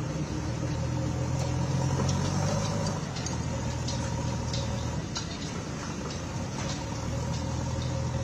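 An engine idling steadily, with a low even hum, and scattered light clicks of concrete paving blocks being handled.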